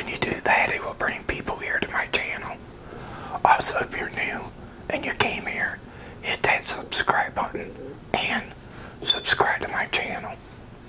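A man whispering close to a clip-on microphone, in phrases broken by short pauses, with sharp hissing on the consonants.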